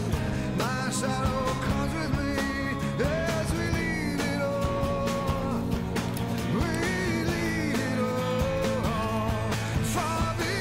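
Background rock song: a singing voice over a steady beat with instruments.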